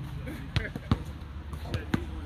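A basketball bouncing on an outdoor hard court: a few sharp, unevenly spaced bounces.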